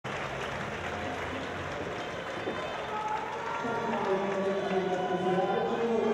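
Audience applause and crowd noise in a large hall, with a voice rising over it from about halfway through.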